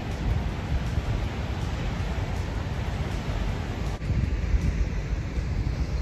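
Steady rushing roar of a waterfall, with wind buffeting the microphone. The higher hiss softens about four seconds in.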